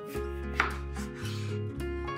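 A chef's knife slicing the peel off a lemon, with one sharp knock of the blade against a wooden cutting board about half a second in, over background music.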